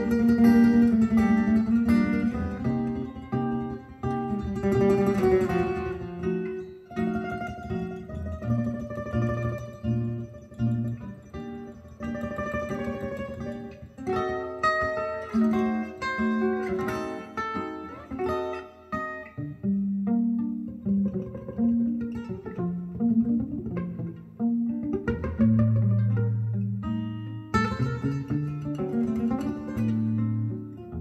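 Guitar music with plucked melody and bass notes, played back through a pair of Falcon LS3/5A Gold Badge bookshelf loudspeakers and picked up by a phone's microphone at the listening seat.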